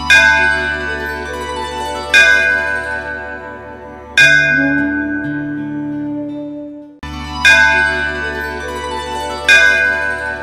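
Devotional intro music built on struck temple bells: five loud strikes about two seconds apart, each ringing out slowly, over a steady low drone. The music cuts off briefly just before the fourth strike.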